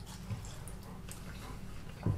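Faint wet smacks and clicks of someone eating a sauce-covered chicken wing, over a low steady room hum.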